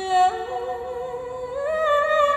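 A woman singing live into a microphone: a slow, wordless phrase of held notes that steps upward in pitch, starting abruptly.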